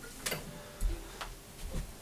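Handling noise as an acoustic guitar is set down and a person rises from a chair: a sharp click, then dull low thumps about a second in and again near the end.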